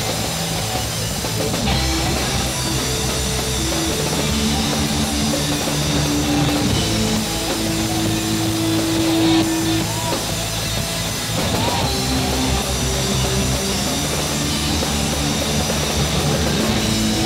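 A live rock band playing: electric guitars, bass and drum kit, with a long held guitar note about halfway through, recorded in a school gym crowd.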